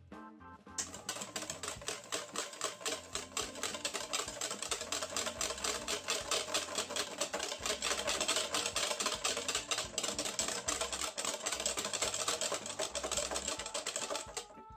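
Wire balloon whisk beating egg and oil into mayonnaise in a stainless steel bowl: fast, even clicks and scrapes of the wires against the metal, several a second, starting about a second in and stopping near the end.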